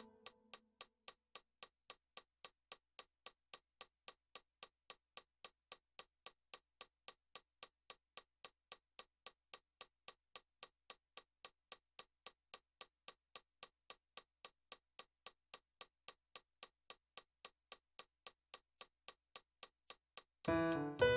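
A metronome clicking steadily at a fast tempo, about three to four sharp clicks a second, while the last piano notes die away at the start.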